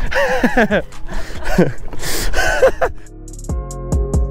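Excited wordless voices, laughing and squealing, then background music with a regular drum beat comes in about three seconds in.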